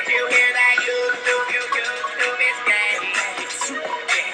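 A song with sung vocals over a backing track with a steady beat.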